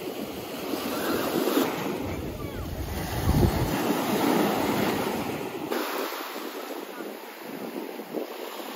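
Small waves washing up and breaking on a sandy shore, with wind rumbling on the microphone, strongest through the middle.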